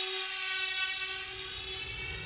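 Electronic trance music in a breakdown: a sustained synthesizer chord with no beat, easing slightly in level.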